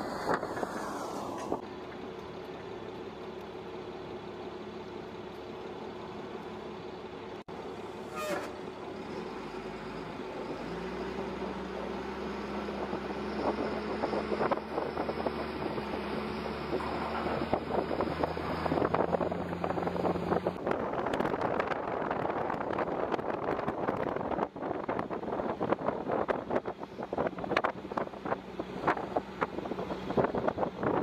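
Armoured military vehicle driving, its engine running with a steady hum that grows louder. In the last third there is a dense clatter of rattles and knocks.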